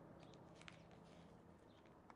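Near silence: faint outdoor background with a few soft ticks.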